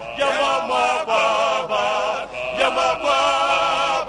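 A male singer singing held, wavering notes backed by a choir.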